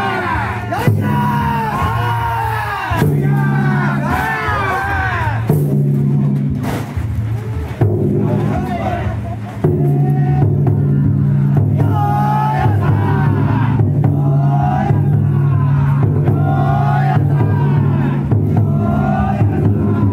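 Taiko drum inside a Banshu-style festival float (yatai) beating a steady rhythm, while the many bearers shoulder it, chant in unison and shout in repeated calls, with crowd noise around them.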